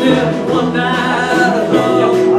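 Live band playing a dance tune, with a singer's voice held over guitar.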